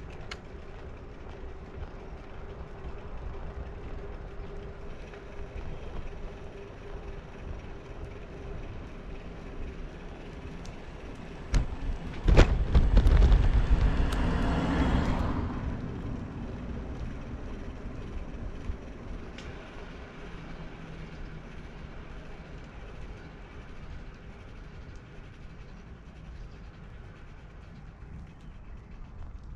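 Steady wind and road rumble from a moving bicycle. About halfway through, a car passes close by in the opposite direction: a swell of tyre and wind noise that starts suddenly, holds for a few seconds and then fades.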